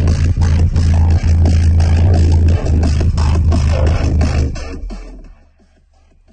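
Electronic music with a heavy, booming bass line played loud on a car audio system through an EDGE EDP122SPL subwoofer. It fades out about five seconds in.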